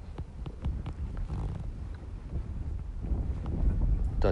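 Wind on the microphone: a steady low rumble, with a few faint small ticks in the first half.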